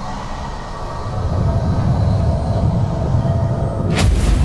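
Cinematic sound-effect rumble under an animated intro, heavy in the low end with faint steady tones above it, swelling over the first second and a half and then holding; a sudden hit lands at the very end.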